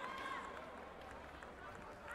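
A raised voice calling out in a large sports hall, held and fading about half a second in, then indistinct hall ambience of distant voices with a few faint knocks.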